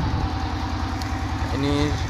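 An engine running steadily at idle, a low, even throb with no change in speed.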